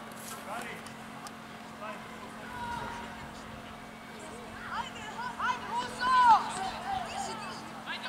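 Voices of players and coaches shouting and calling out across an outdoor football pitch, loudest between about five and seven seconds in, over a faint steady low hum.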